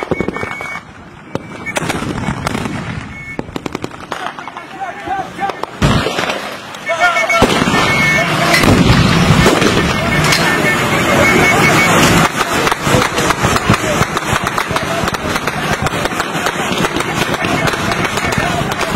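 Rapid bursts of automatic gunfire, dense and repeated, growing heavier through the second half, with men's voices shouting amid it.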